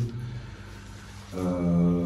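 A man's voice in a drawn-out hesitation sound, a long "uhh" held at one steady pitch for about a second, starting after a short pause about a second and a half in.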